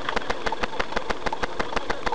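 A car engine idling, heard from inside the cabin of a stationary car, with a steady, even ticking of about nine ticks a second.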